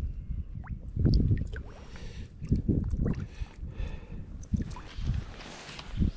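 Shallow water sloshing and splashing irregularly as a trout is held in it by hand and released.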